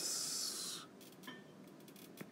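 A short breathy hiss of a person exhaling, lasting under a second, followed by a few faint light taps on a tablet screen.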